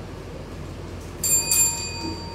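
Small bell, such as a debate timekeeper's desk bell, struck twice in quick succession a little over a second in, its clear ringing tone carrying on over a steady low room hum.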